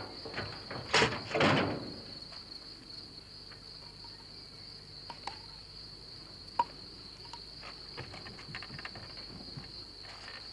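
Crickets chirring in a steady high drone, with two loud clunks about a second in as a car's hood is lifted, and a few light clicks afterwards.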